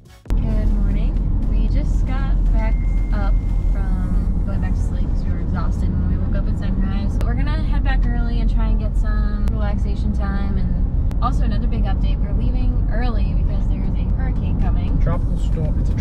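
Loud, steady low rumble of road and wind noise inside a moving car's cabin. It starts abruptly a moment in, with a man and a woman talking over it.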